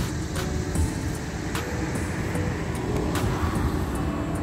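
Street traffic: a vehicle passing, its noise swelling about two seconds in and fading near the end, over a steady low rumble.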